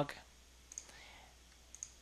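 Two faint clicks from working a computer's mouse or keyboard, about a second apart.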